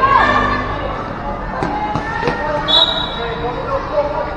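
Futsal ball being kicked and bouncing on a concrete court, two sharp knocks about one and a half and two seconds in, over a steady bed of spectators' voices and shouts. A short, high whistle tone sounds about three seconds in.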